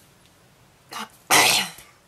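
A woman coughing: a short catch of breath just before halfway through, then one loud cough.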